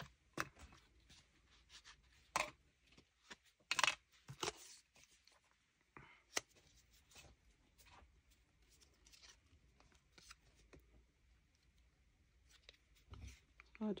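Faint, scattered taps, clicks and paper rustles from handling an ink pad, a small piece of paper and a wood-mounted rubber stamp while inking and stamping.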